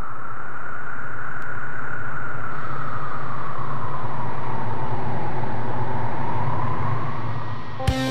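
A synthesized noise sweep in a song's intro: a steady rush of filtered noise whose pitch slowly rises and then sinks, over a steady low drone. Near the end it dips as a guitar comes in.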